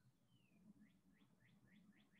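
Near silence, with a faint bird chirping: one short falling note, then a run of short rising chirps, about three a second.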